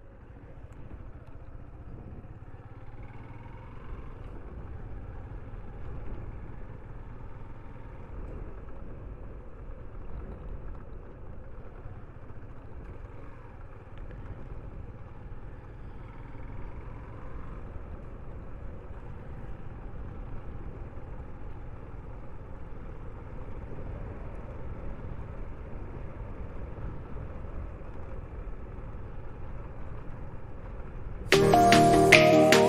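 Steady low rumble of a motorcycle ride at low speed, mostly wind buffeting the microphone with the bike's engine underneath.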